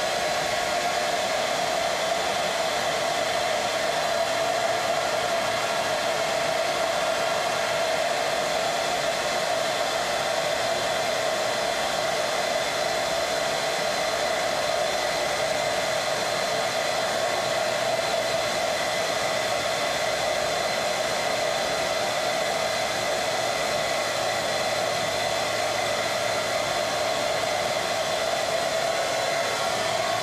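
Hair dryer running steadily, a constant blowing rush with a steady whine, drying freshly airbrushed paint on a miniature figure.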